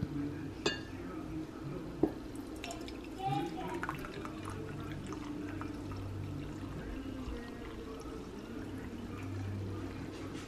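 Hot drink poured from a ceramic teapot into a ceramic mug: a steady trickle of liquid as the mug fills, after a couple of light clinks in the first two seconds.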